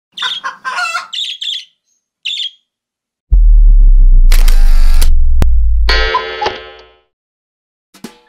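Channel-intro sound effects: a few short bird-like chirps, then a loud deep bass boom with a bright whoosh over it, a single sharp click, and a ringing chime that fades out.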